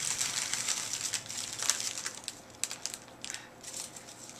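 Metallic foil pot wrapping crinkling and crackling as it is handled and cut with scissors, with irregular sharp crackles, busier in the first half and thinning out toward the end.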